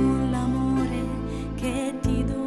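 Slow, gentle Christian devotional song: a melody with vibrato over sustained low bass chords. The chord changes about a second in, and the bass drops out briefly near the end.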